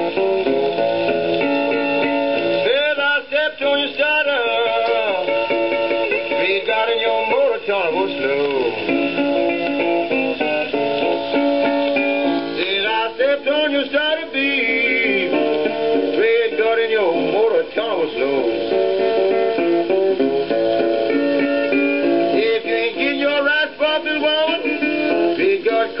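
A 1940 78 rpm shellac record playing an instrumental guitar break of a country blues, heard through a portable record player's built-in speaker. Clusters of bent notes come about every ten seconds.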